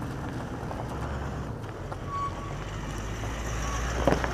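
A motor vehicle running nearby, a low steady rumble that grows somewhat louder in the second half, over outdoor background noise.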